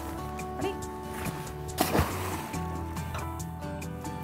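Background music with steady held tones. About two seconds in comes a brief splash: a crab pot, baited with a salmon carcass, going overboard into the water.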